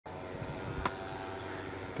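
A steady mechanical hum, like an engine running, with one sharp click a little before halfway.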